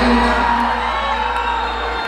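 Live Punjabi concert music played over a theatre's sound system, with a heavy steady bass, and audience members whooping along.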